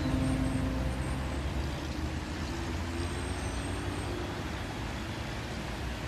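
Cars driving slowly past: a steady low rumble of engines and tyres. A music tail fades out in the first second.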